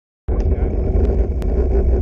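Wind rumbling over the microphone of a camera moving with a road bicycle, mixed with road noise, cutting in suddenly about a quarter second in, with a few sharp clicks.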